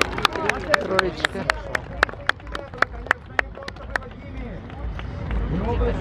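Voices of spectators over a rapid run of sharp, evenly spaced clicks, about four a second, that stops about four seconds in: a camera shutter firing in burst mode.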